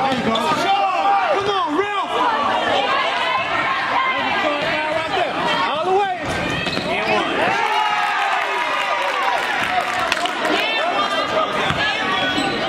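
Live gym sound of a high school basketball game: a basketball bouncing on the hardwood, sneakers squeaking as players cut, and players' and spectators' voices echoing in the gym.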